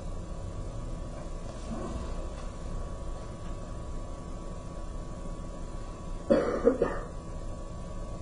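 A single short cough about six seconds in, over a low steady room hum with a faint constant whine.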